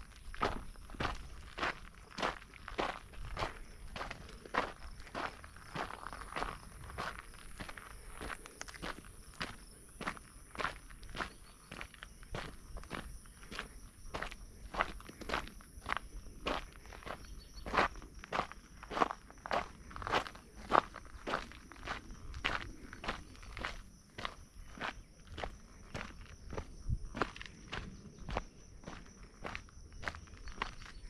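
A hiker's footsteps crunching on a dirt and grit trail at a steady walking pace, about two steps a second.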